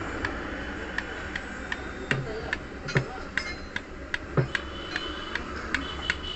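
Repeated light metallic clicks, two or three a second, from a Hero Honda motorcycle crankshaft's connecting rod knocking in its big end as it is tapped by hand. The click comes from up-and-down play in the connecting rod.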